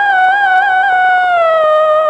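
Film background score: a single high, sustained melodic note with a wavering pitch. It slides down to a lower note about halfway through.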